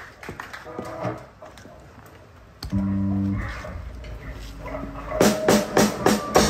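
A live metal band starting a song: a low held keyboard note sounds abruptly about three seconds in, steady and pitched for under a second, then fades to a softer held tone. Near the end the drum kit comes in with regular hits.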